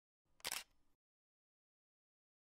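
A camera shutter click sound effect, heard once and briefly about half a second in.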